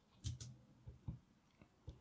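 Quiet room with a couple of faint computer input clicks about a quarter second in, then a few soft low thumps.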